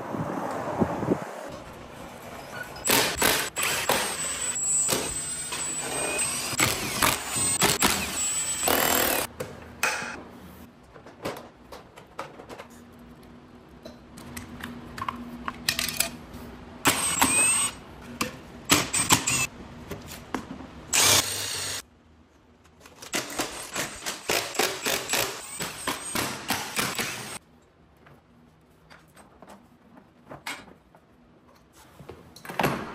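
Workshop teardown sounds of a Kayo EA110 electric quad being stripped: irregular clicks and clatter of parts and plastics coming off, with short bursts of a power tool, broken by brief quiet gaps.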